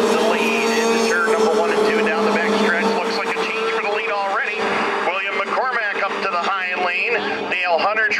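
Junior 340-class racing snowmobiles with two-stroke engines running hard in a pack on an ice oval, making a steady engine drone that weakens after about four seconds. A race announcer's voice carries over it.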